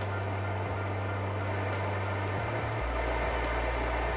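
Steady rushing hiss of a LUISA ventilator's blower pushing air through the breathing hose during its automatic circuit test, growing slightly louder near the end. A low sustained bass note from background music runs underneath and shifts pitch about three seconds in.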